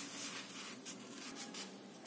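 Faint rustling and rubbing of hands and a pen on a sheet of paper, in short scratchy strokes.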